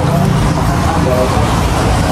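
Steady low rumble of street traffic, with voices chattering faintly in the background.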